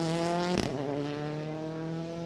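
Skoda Fabia rally car's engine pulling away under load, its note climbing, with a brief break about half a second in, after which it holds and slowly falls.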